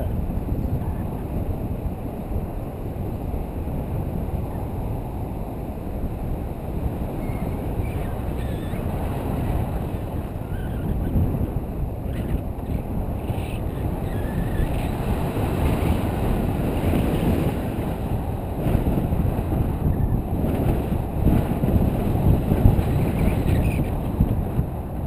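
Airflow buffeting the camera microphone during a tandem paraglider flight: a steady, low rushing noise that swells louder in gusts near the end.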